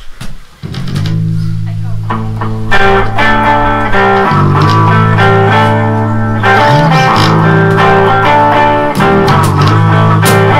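Electric and acoustic guitars jamming. Low held notes come in under a second in, and fuller strummed chords join about three seconds in.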